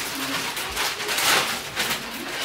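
Plastic shopping bag rustling and crinkling as clothes are pulled out of it, loudest around the middle.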